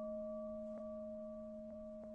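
A struck bowl bell ringing out, several steady tones slowly fading, with faint taps about once a second.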